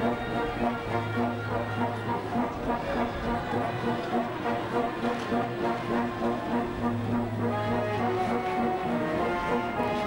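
Marching brass band playing a march with a steady beat: tubas, trombones and other brass, with a long low note held twice.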